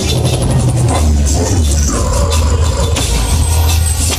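Latin dance music (cumbia sonidera) played loud over a sonidero's sound system, with a heavy, steady bass and a held tone partway through.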